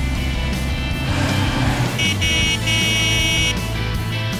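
Cartoon background music mixed with car sound effects. A bright, high steady tone sounds for about a second and a half starting about two seconds in.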